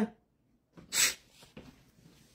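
A single short, sharp breath noise about a second in, like a quick sniff, in an otherwise near-silent pause.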